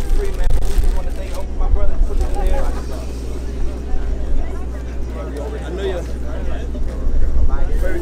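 Several people talking indistinctly at once, over a steady low rumble.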